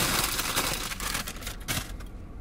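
Paper fast-food packaging rustling and crinkling as it is handled, a dense run of crackles that stops near the end.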